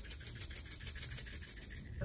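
A small spice jar shaken over a pot of raw meat, dried herbs and chilli flakes falling out with a faint, scratchy rattling.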